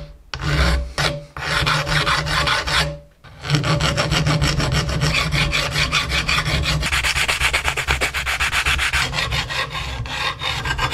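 Flat hand file rasping across the steel handle of an old adjustable wrench held in a vise, in quick, even repeated strokes. Brief pauses come near the start, about a second in and around three seconds in, then the filing runs on without a break.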